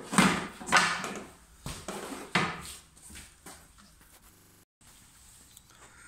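Wooden skirting boards being handled and set into a wall corner: a few sharp wooden knocks in the first two and a half seconds, the loudest near the start, then softer rubbing and shuffling.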